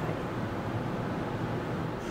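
Steady background noise, a low rumble with a fainter hiss over it, with no distinct events.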